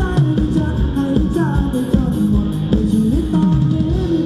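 Loud live band music through large PA loudspeakers: a Thai ramwong dance song with melody and drums.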